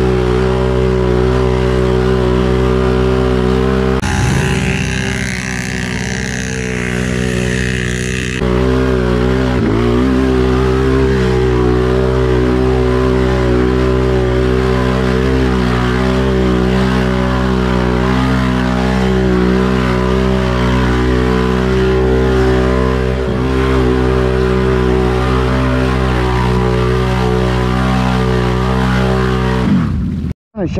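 ATV engine running hard under load while churning through deep mud. From about four to eight seconds in, a loud rushing noise rises over the engine, then the engine note climbs briefly.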